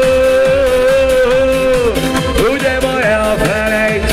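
Live pop music from a band with a male singer and keyboard, over a steady electronic beat; one long note is held for about the first two seconds, then falls away.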